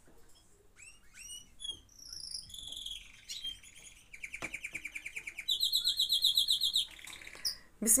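Small songbirds chirping, with scattered short whistled calls and chirps. About halfway through they break into fast, louder trills that go on for a few seconds.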